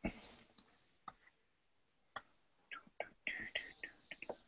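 A few faint, irregular clicks spaced about half a second apart, of the kind made by a computer mouse and keyboard in use, with a short breathy hiss near the end.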